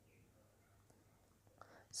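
Near silence: room tone, with a man's narrating voice starting right at the end.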